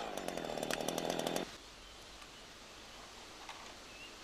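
Husqvarna chainsaw engine running steadily, cutting off abruptly about a second and a half in, leaving only faint outdoor background.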